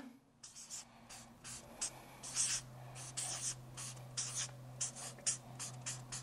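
Marker pen writing on a flip chart pad: a run of short strokes, about three a second.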